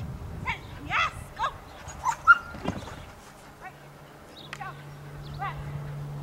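Dog barking a string of short, high yips while running an agility course, the loudest about two seconds in.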